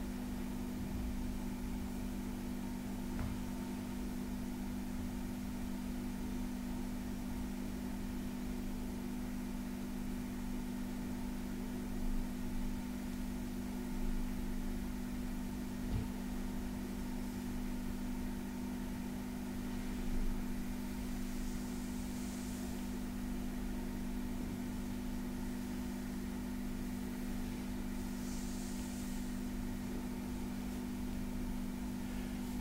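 Hands softly stroking and rubbing a bare back, faint under a steady low hum and hiss, with a few soft taps and two brief swishes of skin in the second half.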